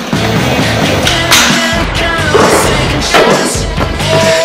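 Skateboard wheels rolling on smooth concrete, with a few sharp clacks from the board. Loud rock music plays throughout.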